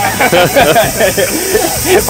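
Several people's voices calling out over one another, with a steady high hiss behind them.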